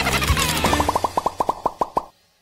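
A rapid run of short cartoon plop sound effects, more than ten a second, starting about half a second in over light children's background music. This is an edited transition effect that cuts off abruptly.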